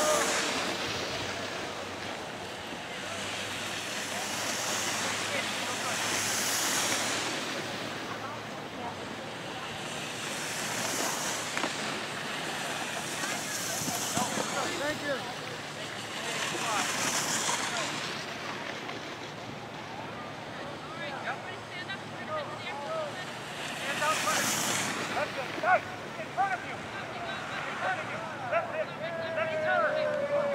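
Wind rushing over the microphone on a ski slope, swelling into a loud hiss and fading again every few seconds, with faint voices in the background.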